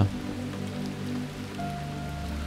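Ambient background bed: a steady drone of held low tones from a NASA space-sound recording, mixed with the rushing of a flowing stream. A higher steady tone comes in near the end.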